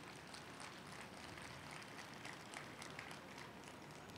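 Very quiet room tone with a few faint, scattered ticks.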